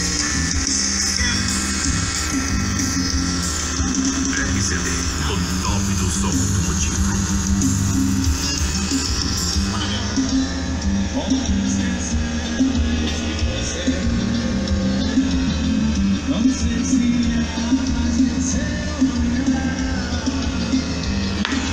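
Music playing loudly through a car's custom trunk sound system (a Brazilian paredão) of horn tweeters and 15-inch woofers, with a steady heavy bass.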